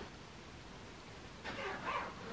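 Quiet room for about a second and a half, then a short whine-like vocal call near the end.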